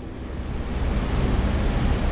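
Steady rushing noise with a low rumble underneath, fairly loud and unchanging, with no words over it.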